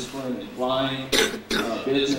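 A man speaking into a lectern microphone, with a short noisy burst about a second in that breaks his speech.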